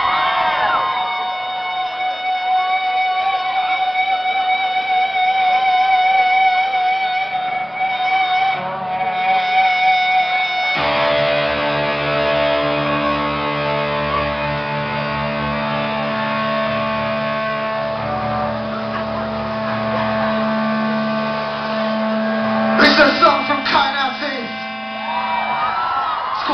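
Live rock band starting a song: an amplified electric guitar holds sustained notes over crowd shouts, then the full band comes in about eleven seconds in with a dense, loud wall of guitars and bass. Voices rise over the music again near the end.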